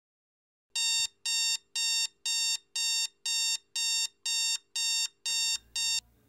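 Alarm clock radio beeping: a steady run of identical electronic beeps, about two a second, starting under a second in and stopping abruptly near the end as it is switched off.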